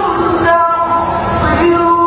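A male reciter holding one long, steady note in melodic Quran recitation (qira'at sab'ah), with small shifts in pitch along the way.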